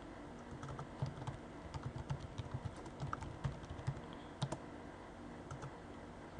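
Typing on a computer keyboard: a run of quick, uneven key clicks that thins out near the end.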